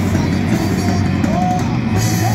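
Live heavy metal band playing: guitar over a drum kit, with a guitar note bent in pitch about one and a half seconds in.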